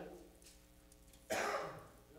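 Quiet room tone for about a second, then a man gives one short throat-clearing cough that fades within about half a second.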